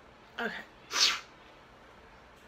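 A woman sneezing once: a single short, sharp burst about a second in.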